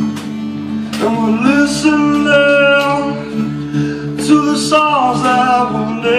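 A man singing live while strumming an acoustic guitar.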